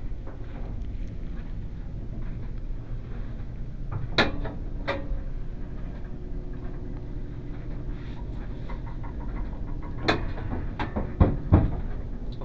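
Old scissor-gate elevator running between floors: a clank about four seconds in, a steady motor hum over a low rumble, then clunks about ten seconds in and twice more near the end.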